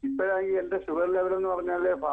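Speech only: a person talking over a telephone line, the voice thin and narrow-sounding.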